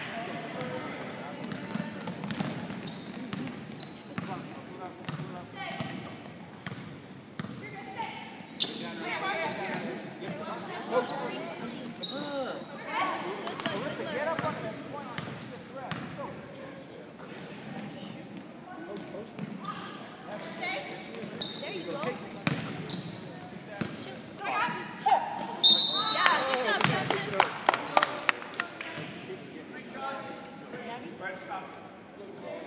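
Girls' basketball game on a hardwood gym floor: sneakers squeak in many short chirps, the ball bounces, and indistinct voices call out across the hall. Near the end a short, loud referee's whistle blows, followed by a flurry of bounces and knocks.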